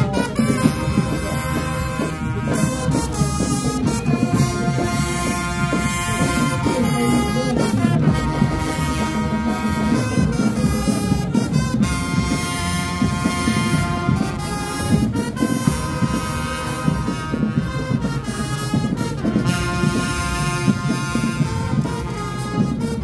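High school marching band playing as it marches in: a full brass section with sousaphones sounding held chords in phrases broken every few seconds.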